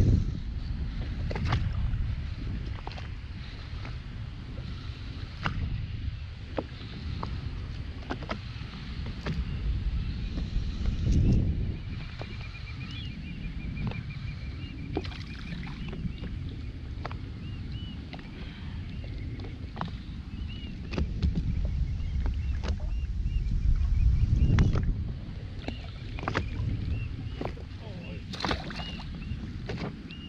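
Wind rumbling on the microphone and sea water lapping and slapping against an inflatable boat's hull, with scattered sharp clicks and knocks. The rumble swells twice, about a third of the way in and again near the end.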